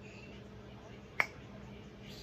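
A single short, sharp click about a second in, over a faint steady room hum.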